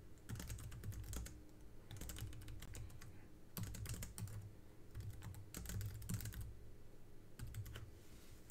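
Typing on a computer keyboard: faint clicking keystrokes in several short bursts with brief pauses between them.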